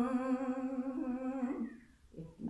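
An elderly woman's voice holding a long, slightly wavering sung note that fades out about a second and a half in, ending a line of the song.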